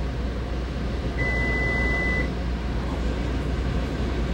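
A single steady electronic beep, about a second long, over a steady low hum of room noise.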